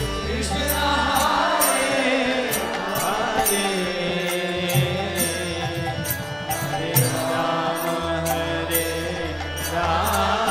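Devotional kirtan: a group sings a chant over a barrel drum, with metallic hand cymbals clashing in a steady beat.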